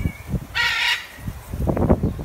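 A single harsh, squawking bird call, about half a second in and lasting under half a second.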